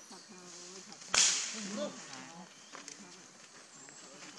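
A single sharp crack about a second in, the loudest sound, with faint talk in the background.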